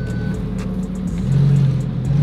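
Lamborghini engine heard from inside the cabin, running low and steady, then rising in pitch about a second in as the car picks up speed.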